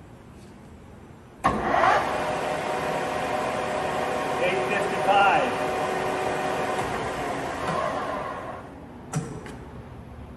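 Sharpe 1880CL 18-by-80-inch gap bed engine lathe starting up about a second and a half in. Its geared headstock and three-jaw chuck run with a steady whine, then wind down and stop near the end, followed by a short knock.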